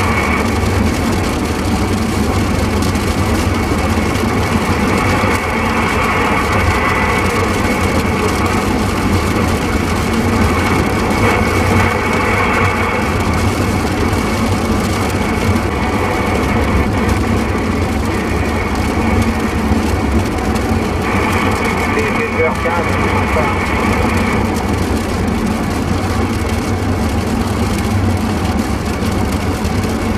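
A CB radio receiving on AM gives steady static with indistinct, garbled voices coming and going. Under it runs the steady road rumble of a moving vehicle.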